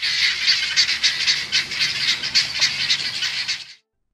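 A flock of helmeted guineafowl calling loudly together in rapid repeated calls, about four a second: their group alarm chorus, raised to scare off a predator and warn the flock. It cuts off shortly before the end.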